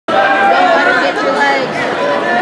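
Crowd of spectators chattering in a gymnasium, many voices talking over one another at a steady level.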